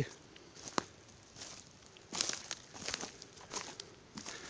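Footsteps through forest undergrowth, with dry leaves and twigs crackling and rustling underfoot in irregular bursts and one sharp click just under a second in.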